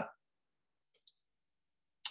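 Near silence broken about a second in by a faint, short double click of a computer mouse, the press and release that advance a presentation slide.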